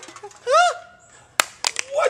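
A brief vocal sound from a man, then three sharp knocks of aluminium drink cans on a folding table a little after a second in, the first the loudest.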